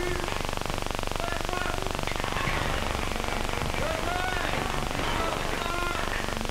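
Steady hiss and crackle of an old optical film soundtrack, with faint, indistinct voices in the background.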